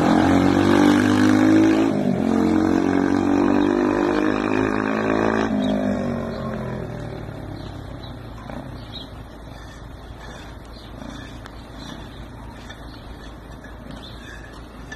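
Motomel X3M enduro motorcycle's engine revving hard as it rides past close by, pitch climbing, with a short break about two seconds in. About five seconds in the engine note drops away and fades as the bike rides off.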